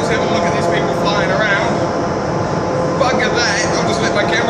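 Indoor skydiving vertical wind tunnel running, heard from the viewing lounge as a loud steady rush of air with a constant hum. Indistinct voices come through it about a second in and again near the end.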